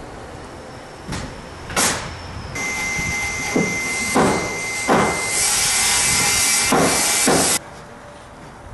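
Construction-site work noise: a few sharp knocks, then a steady hissing machine noise with a constant high whine and more knocks through it, which cuts off suddenly near the end.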